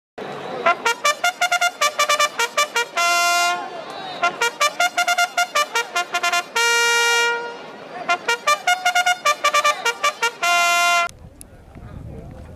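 Intro fanfare on a trumpet-like horn: runs of quick, repeated short notes, broken three times by a long held note, cutting off abruptly about eleven seconds in.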